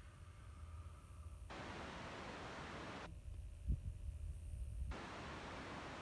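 Low wind rumble on the microphone, with two stretches of soft hiss about a second and a half long each and a single short thump a little past the middle.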